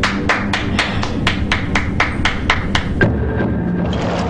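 A fast, even series of about a dozen sharp knocks, roughly four a second, stopping about three seconds in. A low sustained musical drone runs underneath.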